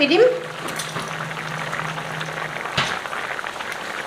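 Brothy curry simmering in an iron kadai on a gas burner, a steady soft bubbling with fine crackle. A low steady hum runs under it and stops with a faint knock a little under three seconds in.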